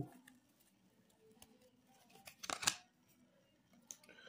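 A trading card pack's plastic wrapper being opened by hand, a short burst of crackling rustle about two and a half seconds in, with faint handling sounds around it.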